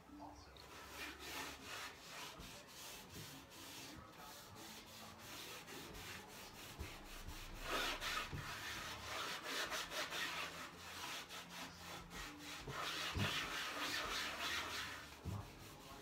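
Cloth rubbing wax over a painted wooden table in quick back-and-forth strokes, louder about halfway through and again near the end.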